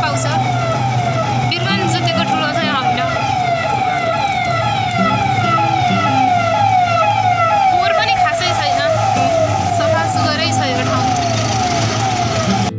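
An electronic siren-like warning tone: a short falling sweep repeated about two and a half times a second, held steady at an even level, over a low steady hum.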